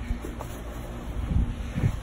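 Low rumble of wind and handling noise on a phone's microphone as it is carried, with a few faint soft knocks in the second half.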